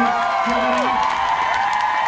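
Audience applauding and cheering, with high whoops and shouts over steady clapping.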